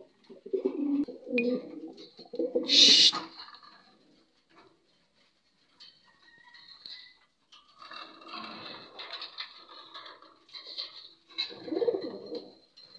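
Domestic fancy pigeon cooing in repeated low phrases, with a short, loud, hissing burst about three seconds in. After a quiet gap, fainter sounds return, and a louder coo comes near the end.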